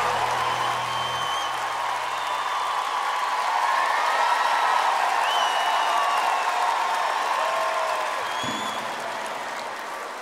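Large arena crowd applauding and cheering, with scattered whistles and shouts, as the last notes of the music die away in the first second. The applause slowly fades toward the end.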